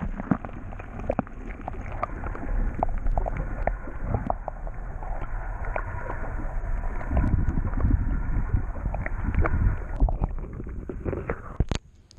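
Muffled water sloshing and gurgling heard through a waterproof GoPro's housing held about an inch under the river surface, with scattered small clicks. A low rumble swells about seven seconds in, and a sharp knock comes near the end.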